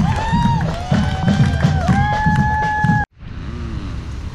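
A parade marching band plays long held notes over a steady drum beat of about two to three hits a second. The music cuts off abruptly about three seconds in, leaving a quieter outdoor background.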